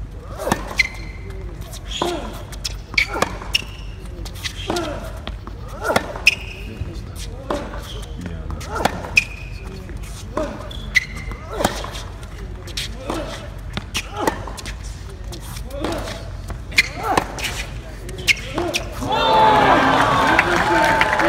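A long tennis rally heard from courtside: racket strikes and ball bounces about once a second, with short shoe squeaks on the hard court. Near the end the rally stops and the crowd cheers and applauds the point.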